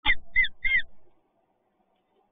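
Peregrine falcon calling: three short calls in quick succession in the first second, then quiet.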